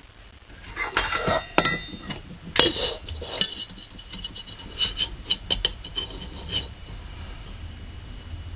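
A handful of sharp metal clinks and knocks, some ringing briefly, as a steel can is lifted off a steel plate and a metal hot cap is set down under the plunger of a dial test indicator.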